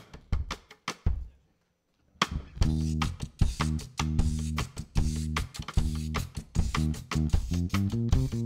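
Live indie-pop band with electric guitars, bass guitar and drum kit starting a song. There are a few short taps and a moment of silence, then the full band comes in just over two seconds in and plays on with a steady beat.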